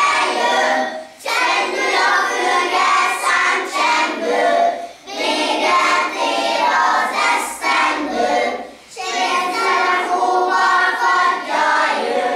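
A group of young children singing a song together in chorus, in phrases broken by short breathing pauses about every four seconds.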